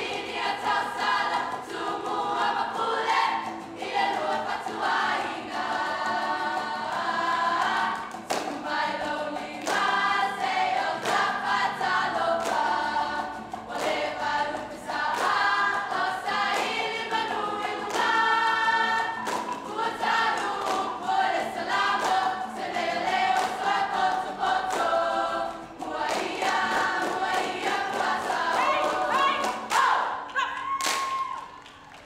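Young women's choir singing a Samoan song together, loud and steady, with sharp hand claps running through it.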